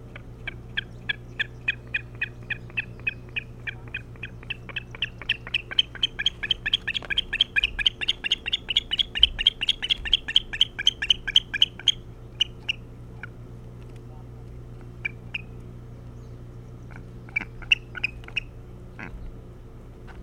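Osprey calling: a long series of short whistled chirps that quickens and grows louder partway through, stops about twelve seconds in, then a few scattered chirps near the end.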